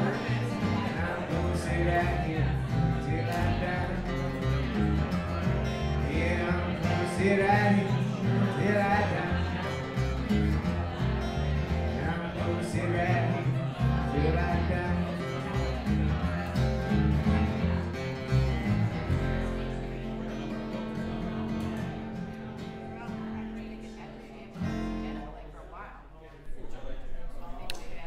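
Live country band with acoustic guitar and a singer; about two-thirds of the way through the song settles into a long held chord that fades down and cuts off near the end.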